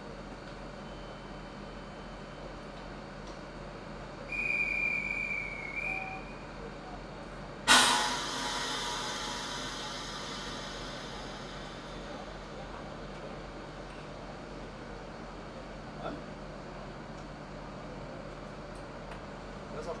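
Passenger train standing at a platform with a steady low hum, then a departure whistle held for about two seconds. A few seconds later comes a sudden loud blast of compressed air that hisses away over several seconds, typical of the train's air brakes being released just before it pulls out.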